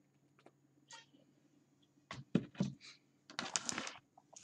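A deck of tarot cards being shuffled by hand: a few faint ticks at first, then several sharp taps of the cards about two seconds in, and a dense flurry of card-on-card rustling near the end.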